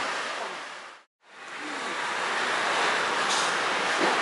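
Steady rushing background noise that fades out to a moment of silence about a second in, then fades back up.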